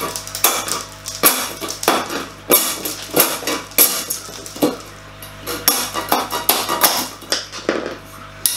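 Plastic egg-crate light diffuser grid being snapped apart by hand: a rapid, irregular series of sharp cracks and clicks as the grid is broken to size, over background music.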